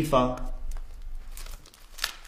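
Paper rustling and crinkling as photo album pages are handled, irregular, with louder crackles about a second and a half in and near the end, after a short spoken phrase.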